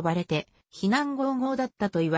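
Speech only: a synthesized text-to-speech voice narrating in Japanese, with a brief pause about half a second in.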